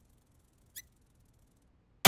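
Near silence, with one faint, short click a little under a second in.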